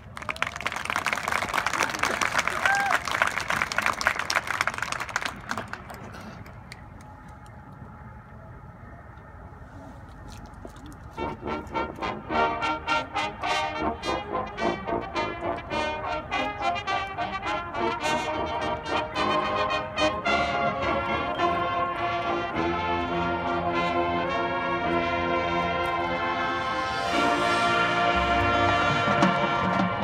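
Crowd applause and cheering for about the first five seconds, then a high school marching band starts playing about ten seconds in: brass sounding short, pulsing chords over percussion. The music grows fuller, with heavy bass drums near the end.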